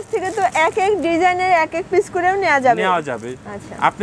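Speech only: a person talking steadily, with no other sound standing out.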